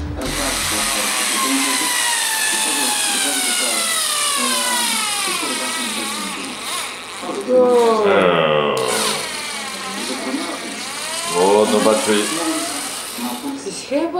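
Small cordless drill/screwdriver drilling into a cast puppet head. Its motor whine runs continuously, its pitch sagging slowly and then dipping and picking up again twice as the bit bites.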